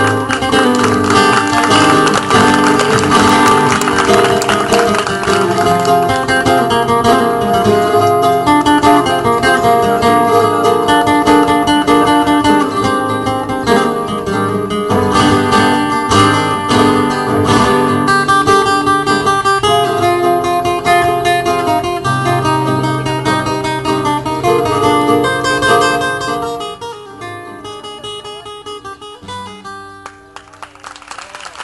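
Flamenco guitar played live, a dense run of plucked and strummed passages that dies away near the end.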